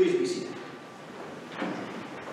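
Congregation sitting down in wooden pews: a sudden knock with a short voice-like sound at the start that fades over half a second, then shuffling and another knock about a second and a half in.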